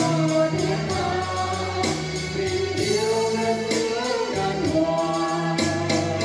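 A man and a woman singing a duet into microphones through a PA system, over a backing track with bass notes and a steady beat.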